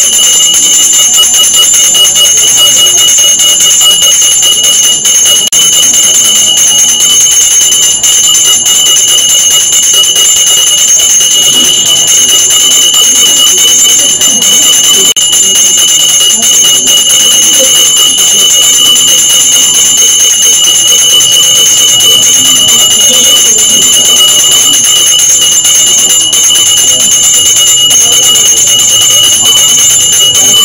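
Temple bells ringing continuously for the aarti lamp offering. The result is a loud, unbroken, high-pitched ringing of several steady tones.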